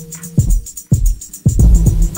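Background music with a steady electronic drum beat: kick drum strokes under regular hi-hat ticks.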